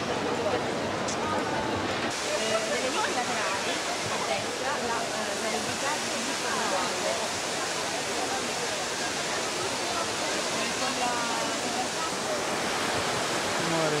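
Steady rush of water from a large public fountain's cascades, from about two seconds in, with faint crowd chatter underneath.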